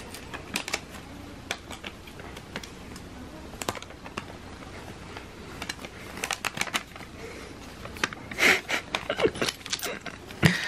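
Christmas wrapping paper crinkling and rustling as it is folded by hand around a small box, with scattered light crackles and a louder run of crinkles near the end.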